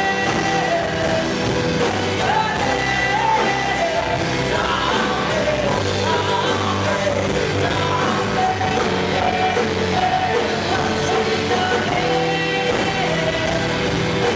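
Live rock band playing: a sung melody over acoustic and electric guitars with a steady drum beat, heard in the room as played.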